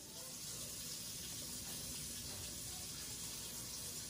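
Kitchen tap running in a steady stream, starting and stopping abruptly.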